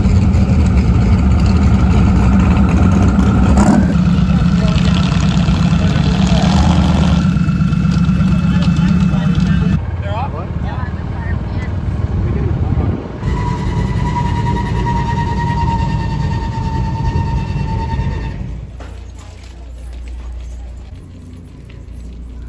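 Fox-body Mustang drag car's engine running loudly at low speed as it moves through the pits, with a deep, steady rumble. The sound changes about ten seconds in and drops to a much quieter background about eighteen seconds in.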